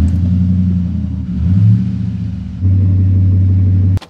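Pickup truck engine idling, heard from inside the cab, with a brief slight rise in revs around the middle of the clip.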